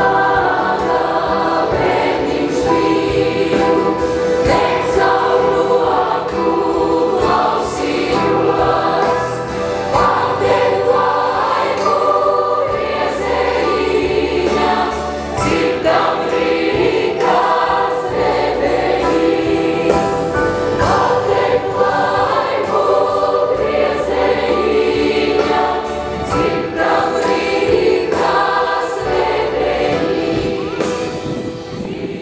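Massed youth choir singing a song live, with a female soloist singing into a microphone.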